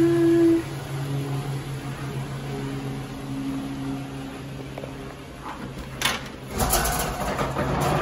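Toyota Sienna minivan backing slowly out of a garage, its engine giving a steady low hum, with a louder, rougher rumble and a few knocks in the last couple of seconds.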